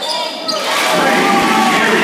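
Basketball game in a gym: the ball bouncing and sneakers squeaking on the hardwood court, with spectators' voices echoing through the hall. It gets louder about half a second in.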